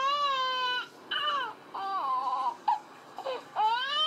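A baby boy crying in a tantrum, heard through a baby monitor's speaker: a long wail that breaks off about a second in, two shorter cries, then another wail rising near the end.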